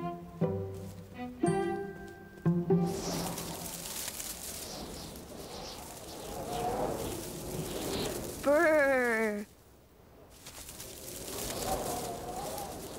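Plucked and bowed cello music for the first few seconds gives way to a whooshing cartoon wind blowing through the trees. About eight and a half seconds in, a short voice falls and wavers like a cold shiver, then cuts off sharply.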